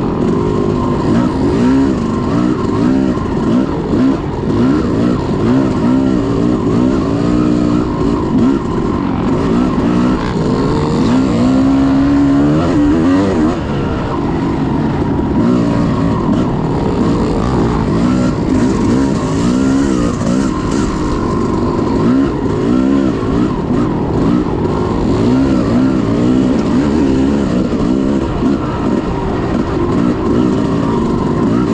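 Off-road dirt bike engine heard close up from the bike while racing a woods trail, its revs rising and falling constantly with the throttle.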